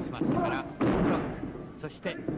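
A heavy thud of a wrestler's body hitting the ring canvas about a second in, ringing briefly in the hall, over crowd noise and shouting voices.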